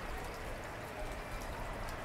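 Low, steady background hiss with no distinct events, the water-and-air ambience of an aquarium shop.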